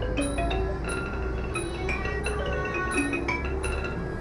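Live traditional Thai music: a ranat (Thai wooden xylophone) plays quick runs of struck notes, with a metallic clink keeping time about every three-quarters of a second, over a low, steady traffic rumble.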